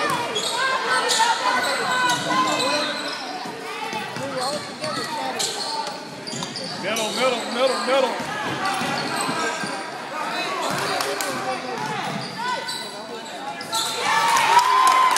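A basketball game in a large gym: a ball bouncing on the hardwood court while players and spectators call out.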